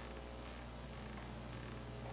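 Faint, steady low electrical hum with background hiss: room tone with no distinct event.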